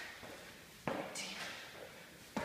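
A sneaker-shod foot landing on a rubber gym floor mat during a Spider-Man climb, one sudden knock about a second in, followed by a breathy hiss of hard breathing.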